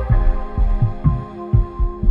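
Background music: sustained synth chords over a pattern of deep bass drum thumps that drop in pitch, two to three a second.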